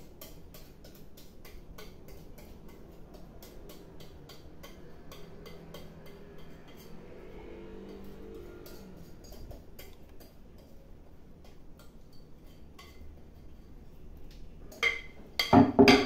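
Cake batter being scraped out of a glass mixing bowl into a metal ring cake tin: a quiet run of light clicks and scrapes against the bowl, with a couple of louder knocks shortly before the end.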